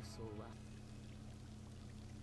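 Faint anime episode audio: a short voice-like sound near the start, then only a low steady hum.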